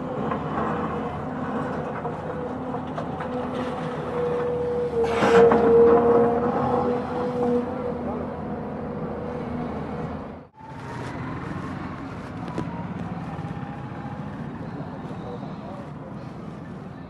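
Diesel engine of an excavator running with a steady drone over crowd chatter, growing louder for about three seconds around five seconds in as the arm works. A sudden cut near the end of the first two-thirds leaves quieter background voices.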